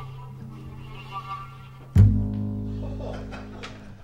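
Closing bars of background music: held low notes, then a loud final chord about two seconds in that rings on and fades away.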